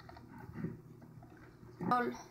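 Faint sounds of a hand packing shredded raw cabbage down into a glass jar, with soft, irregular squishing of the cabbage. A voice starts near the end.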